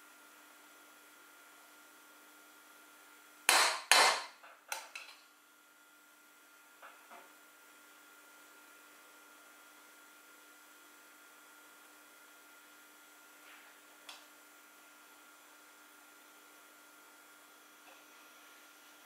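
Kitchen knife knocking against a bowl while cherries are cut open: a quick run of sharp knocks about three and a half seconds in, the first two the loudest, then a few faint taps around seven and fourteen seconds.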